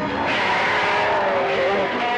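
Sound effects from a horror-film clip: a loud, steady rushing roar with several whines that waver and slide up and down in pitch.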